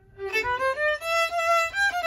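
A group of fiddles starts a Kalotaszeg Hungarian couple-dance tune (magyar pár), the bowed melody beginning about a quarter second in and climbing over the first second, all on one line.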